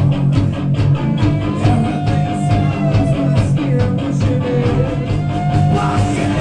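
Stoner rock band playing live: loud distorted electric guitars and bass over a steady drum beat, with a lead guitar line holding and bending notes.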